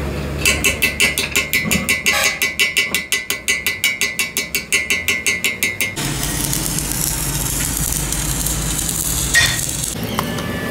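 Hammer striking a fresh weld bead on a steel trailer axle beam in a fast, even run of about four to five knocks a second, chipping off the slag. About six seconds in it gives way to a stick-welding arc, crackling and hissing steadily over a low hum, with one sharp pop near the end.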